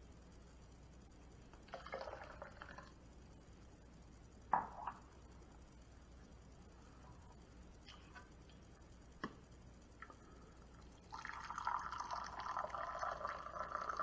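Water poured from a stainless thermal carafe into a ceramic mug, a steady liquid pour starting about three-quarters of the way in. Earlier, a brief splash of the mug being emptied into a plastic pitcher and a sharp knock as the mug is set down on the stone counter.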